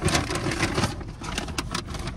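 Quick clicks and rustles of a plastic spoon working a takeout food container, densest in the first second, over a low steady hum of the car cabin.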